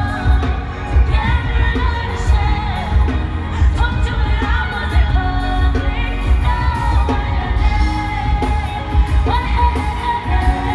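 Live pop song in concert: women's sung vocals over a heavy, pulsing bass backing.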